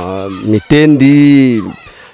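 A rooster crowing loudly: one long call whose drawn-out final note rises and falls, fading away just before the end.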